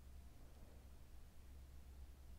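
Near silence: a pause in the narration with only faint steady low hum and hiss of the recording.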